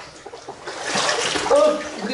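Legs wading through knee-deep water, sloshing and splashing, swelling from under a second in; a man's voice starts near the end.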